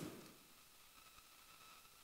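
Near silence: room tone, with a faint steady high-pitched whine.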